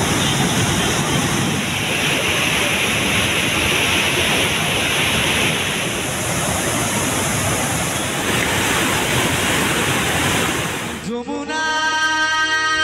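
Water rushing through the open sluice gates of a dam during a release, a loud, steady rush of falling water. About eleven seconds in it cuts off abruptly and music begins.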